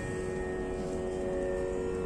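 A steady musical drone of several held pitches sounds on unchanged, with no attack or break, over faint room noise.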